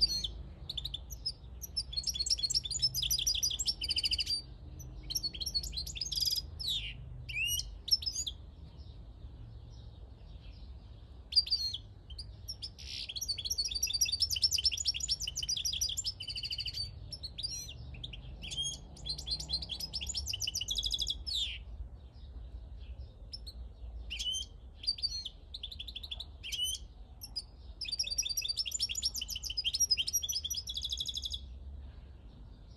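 Caged wild-caught European goldfinch singing: phrases of rapid, high twittering notes a few seconds long, broken by short pauses, repeated all through. A low steady rumble lies underneath.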